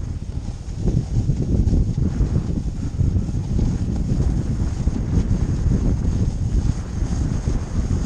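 Wind buffeting a GoPro action camera's microphone as it rides down a ski slope with a snowboarder: a loud, uneven, gusting rumble that never lets up.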